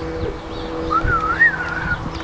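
A single whistled note, about a second long, that rises and falls in pitch, over a steady low hum.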